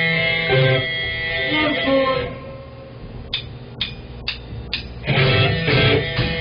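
Live rock band with electric guitars: a couple of seconds of guitar chords, a quieter stretch broken by four sharp clicks about half a second apart, then the full band with drums comes in loud about five seconds in.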